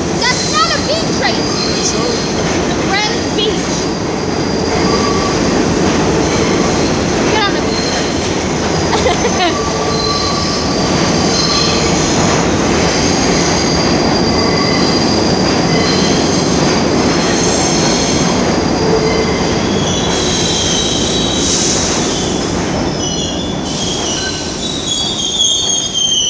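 New York City subway train running into a station along the platform: a loud, steady rumble of steel wheels on rail, with high-pitched wheel squeal over the second half. The noise eases near the end as the train slows.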